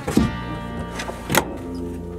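Background music with held notes and two sharp hits, about a second apart.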